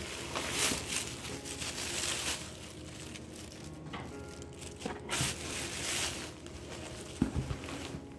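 Fabric pieces and a plastic bag rustling and crinkling as hands rummage through a cardboard box, in uneven bursts with short lulls between.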